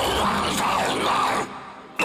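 Death metal song playing, with heavy distorted guitars, bass and drums. The band cuts out abruptly about one and a half seconds in, leaving a brief gap before it crashes back in.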